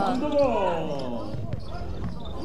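A basketball bouncing on an indoor court floor, with a few sharp knocks, under voices on the court.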